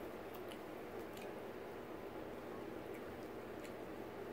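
Faint, scattered clicks and crunches of a child biting at a hard benny cake, a caramelized sesame-and-peanut brittle that is too hard for her to bite through.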